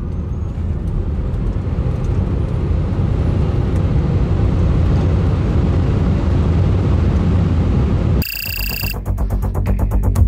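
Wind and tyre roar inside the cabin of a Lucid Air Dream Edition electric sedan accelerating hard down a drag strip, growing louder as the speed climbs past 120 mph. About eight seconds in it cuts off for a brief electronic beep, then electronic music with a fast beat begins.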